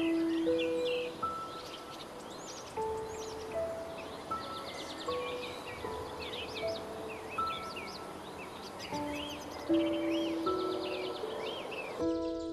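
Slow, sparse piano melody, single notes ringing out one at a time, with songbirds chirping and trilling over it throughout.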